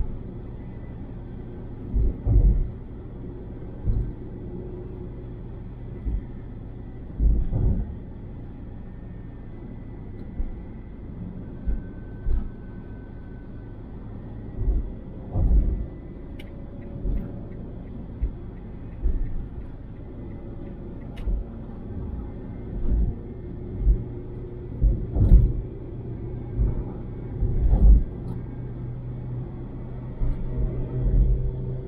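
Car driving at highway speed, heard from inside the cabin: a steady low road-and-engine rumble broken by short, irregular low thumps every second or two.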